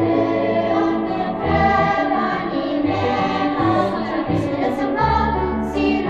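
Children's choir singing in harmony, several voice parts holding sustained chords.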